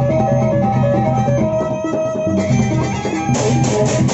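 Lombok gendang beleq gamelan ensemble playing: large barrel drums beaten under the ringing, held pitches of small hand-held gongs, with cymbals clashing. The cymbal clashes grow louder near the end.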